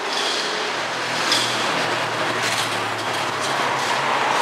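Low steady rumble of a passing vehicle engine over a continuous background din, strongest in the middle.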